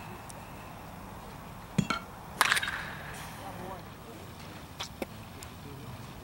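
A baseball bat hitting a pitched ball: one sharp, ringing crack about two and a half seconds in, with a lighter knock just before it and faint ticks near the end.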